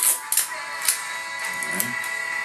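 Adhesive tape being pulled and torn from a dispenser: a few short crackles in the first second, over background music with steady held tones.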